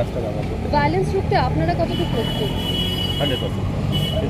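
Busy street background: other people's voices in the first half over a steady low rumble of traffic, with a thin, high, steady tone for about a second past the middle.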